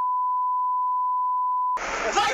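A broadcast censor bleep: one steady, high beep laid over the amateur footage's sound. It cuts off suddenly shortly before the end, where noisy street audio with raised voices comes back.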